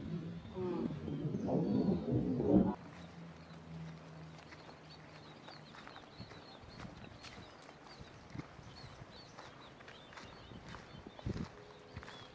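A loud, voice-like sound with a wavering pitch cuts off abruptly about two and a half seconds in. It is followed by a steady low hum for a few seconds. After that come footsteps crunching on dry grass and leaves, with small birds chirping faintly.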